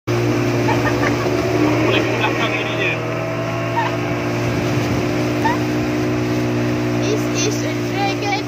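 Motorboat engine running steadily, a constant low drone, with the noise of water and wind around it.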